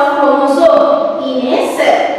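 A woman's voice speaking with drawn-out, held vowels in a sing-song way.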